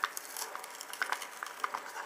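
Irregular small clicks and taps of hard plastic as a Mighty Beanz three-pack is opened and its plastic bean tray handled.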